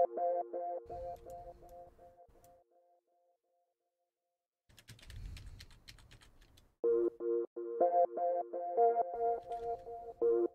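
A short repeating flute-like synth melody loop playing back on its own, with no drums; it stops early on and its echo dies away into silence. Computer keyboard and mouse clicks follow for about two seconds, then the melody loop starts again about seven seconds in.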